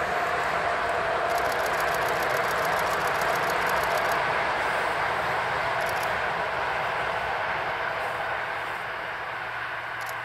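Class E94 electric locomotive hauling a passenger train over a girder bridge, heard from a distance: a steady rolling rumble of wheels on rails that gets quieter after about eight seconds as the train moves off.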